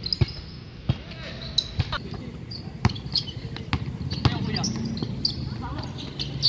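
A basketball thudding on a hard court and against the hoop during play: about six sharp thuds at irregular intervals, with players' voices in the background.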